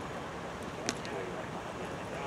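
Steady outdoor background noise with faint distant voices, and one sharp click about a second in.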